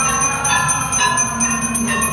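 Temple aarti bells ringing, struck in a steady rhythm about twice a second, each strike ringing on into the next.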